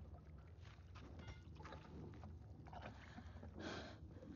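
Faint, hushed cave ambience: a steady low hum under soft scuffs and rustles of movement, with a short breathy hiss near the end.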